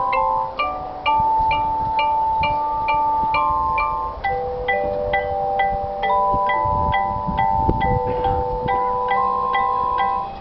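Marching band front ensemble playing a soft passage on mallet percussion: a steady run of short bell-like notes, about three a second, over long held tones.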